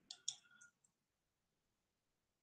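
Two sharp computer mouse clicks in quick succession just after the start, with a faint tail, then near silence.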